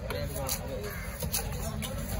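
Large knife chopping through a whole fish into steaks on a wooden block: a few sharp chops about half a second to a second apart, over background voices.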